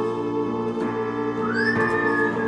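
Instrumental band music: sustained organ and keyboard chords, with a high sliding lead tone that rises about a second and a half in and is then held.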